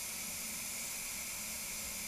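Steady hiss of rushing air in a paint spray booth, even and unbroken.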